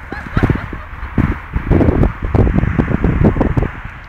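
Irregular low thumps and rumble from the handheld camera's microphone being knocked about, with short distant shouts near the start.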